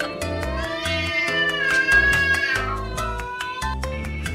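An angry cat's long drawn-out yowl, rising and then falling in pitch over about three seconds. Background music with a steady beat plays under it.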